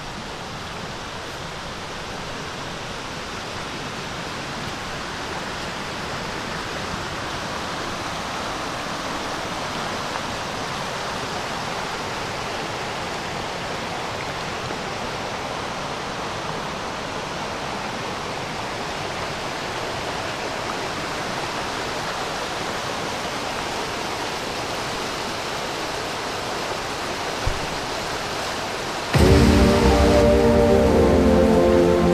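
Steady rush of river water flowing over rocks, growing gradually louder over the first several seconds. Music cuts in abruptly near the end.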